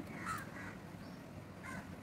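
Faint cawing of crows in the background: two short bouts of calls, the first about a quarter of a second in and the second near the end.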